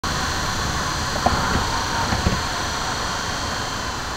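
Steady road and wind noise of a car travelling at highway speed, heard from a moving vehicle, with a few faint ticks in the middle.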